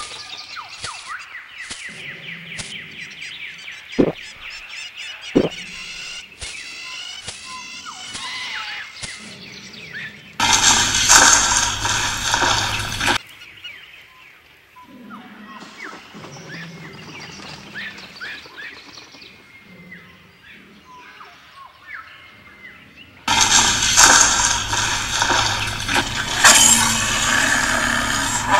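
Stock jungle ambience with birds chirping and calling, broken twice by a loud dinosaur roar sound effect of about three seconds: once about ten seconds in and again near the end.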